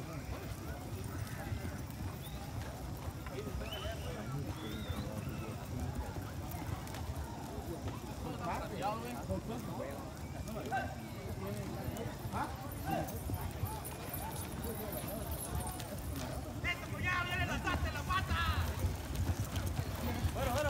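Horses moving on a dirt arena, their hoofbeats under a background of crowd voices and shouts. A louder wavering high-pitched call sounds near the end.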